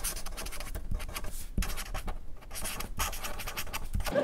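Writing on paper: a steady run of quick scratching strokes.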